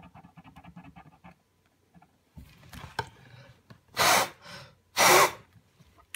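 A person blowing hard on a wet glob of paint twice, two short hissing puffs of breath about a second apart near the end, pushing the paint across the paper into a streak.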